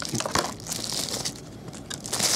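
Plastic and foil packaging crinkling in the hands as a baseball in a clear plastic bag is drawn out of a foil pouch. The crinkling is louder in the first half second, then softer.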